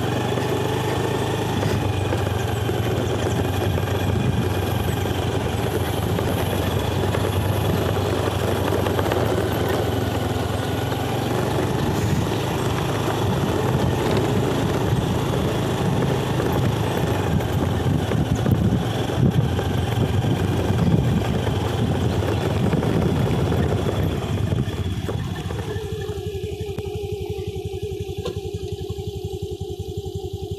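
Motorcycle engine running steadily while riding, with continuous rough rushing noise over it. About five seconds before the end the rushing drops away, leaving a steadier, narrower hum.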